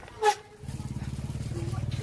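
An engine running with a low steady rumble, coming in about half a second in, after one short loud sound.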